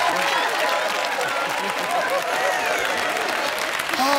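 Studio audience applauding steadily, with scattered voices calling out over the clapping.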